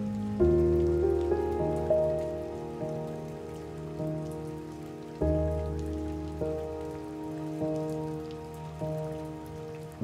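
Slow, soft piano music over steady rain. A low chord is struck about half a second in and again about halfway through, with single notes in between, each ringing out and fading.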